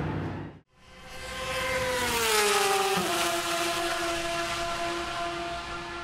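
Racing car engine whose note fades in and falls in pitch, drops abruptly about three seconds in, then holds a steady pitch.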